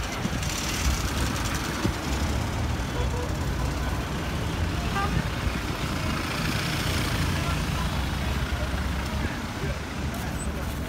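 Road traffic heard from a taxi on a busy street: a steady low engine rumble under an even wash of traffic noise, with voices in the background.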